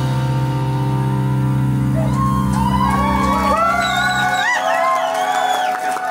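A live band's last held chord ringing out, its low end stopping about four and a half seconds in. Audience whoops and shouts rise over it from about two seconds in.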